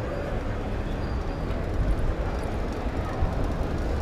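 Steady low rumble of riding noise, wind on the microphone and tyres rolling, from a bicycle fitted with a Superpedestrian Copenhagen Wheel electric hub, riding in eco assist mode; the hub motor itself is super quiet.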